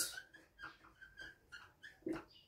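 Marker pen squeaking faintly on a whiteboard in a few short strokes while writing.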